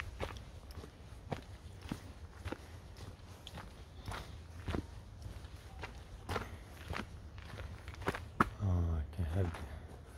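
Footsteps of a hiker walking at a steady pace on a dirt forest trail strewn with dry leaves, each step a short crunch, somewhat under two a second. A brief voice is heard near the end.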